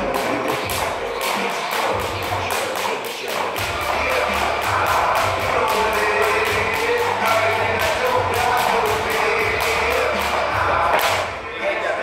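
Speed jump rope slapping the floor on double-unders in a steady rhythm of about two to three strikes a second, over background music; the skipping stops about a second before the end.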